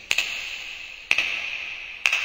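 Sharp clicks, about one a second, each ringing briefly and fading away: a ticking sound effect on a pop music video's soundtrack.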